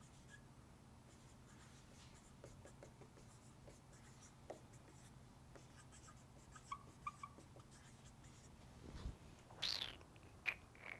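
Marker writing on a whiteboard: faint, scattered strokes with a few small squeaks, and one brief louder sound near the end.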